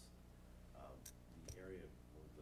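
Faint, soft speech in a quiet meeting room over a steady low electrical hum, with a couple of brief clicks about a second in and again midway through the second half.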